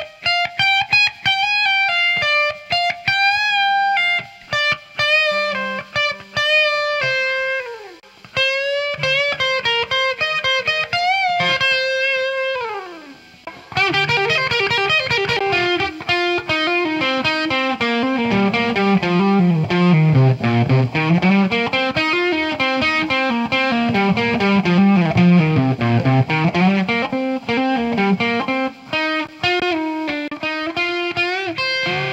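Electric guitar playing a blues-rock lead solo: bent single-note phrases high on the neck, each of the first two ending in a slide down. From about halfway it switches to a fast, repeated hammer-on and pull-off lick that sweeps down across the strings and back up.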